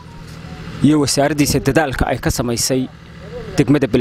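A man speaking in Somali into a handheld microphone. It starts about a second in, with a brief pause near the three-second mark.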